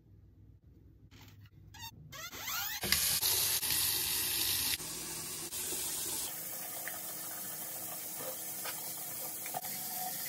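Water running from a tap into a sink. The flow starts about two seconds in, builds to its loudest over the next second, and runs on steadily at a slightly lower level.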